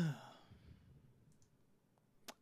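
A man's short voiced sigh at the very start, falling in pitch, followed by quiet room tone with a couple of faint clicks about a second and a half in.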